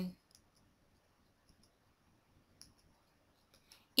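Faint, scattered clicks, about half a dozen over a few seconds, against near silence.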